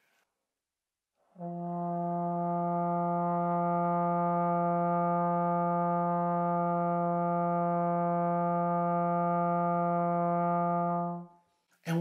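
Trombone playing a single long tone on middle F (the fourth line of the bass clef staff), starting about a second and a half in and held steady at an even level for about ten seconds before stopping.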